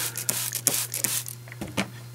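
Water being added to cleaner on a parquet wood floor: a run of short clicks and crackles, densest at first and then scattered, over a steady low hum.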